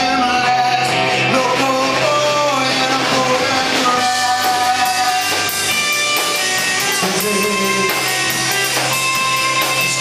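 Live rock band playing: electric guitars, bass guitar and drum kit, with sung vocals.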